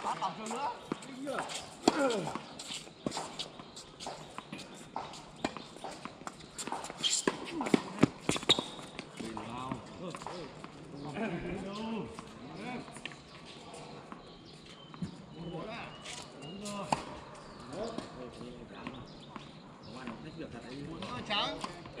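Tennis balls struck by racquets and bouncing on a hard court during doubles play: a series of sharp hits, the loudest a cluster near the middle, between stretches of players' voices.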